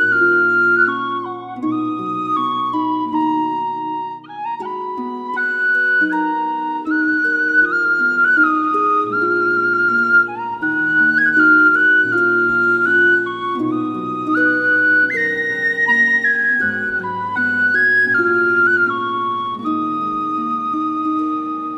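Background music: a slow melody played on a flute-like instrument, moving in steps over sustained accompanying chords.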